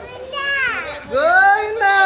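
A toddler's high voice calling out in two drawn-out, sing-song calls, each sliding down in pitch.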